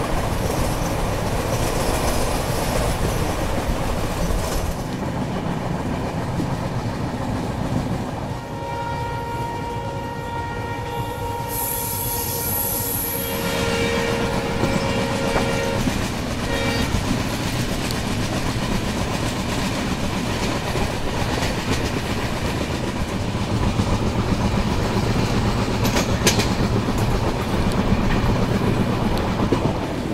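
A long passenger train running, heard from an open coach door: a steady rumble of wheels on the track with rail clatter. About eight seconds in, the locomotive's horn sounds for roughly eight seconds, in two parts, the second lower and stronger.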